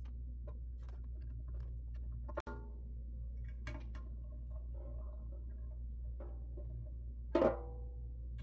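Small clicks and ticks of bolts being tightened by hand around a resin vat's frame, over a steady low hum. Near the end comes a single tap on the freshly stretched PFA release film, ringing briefly like a drum: the film is taut and evenly tensioned.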